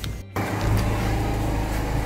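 A steady low mechanical hum that begins right after a brief dropout in the sound, about a third of a second in.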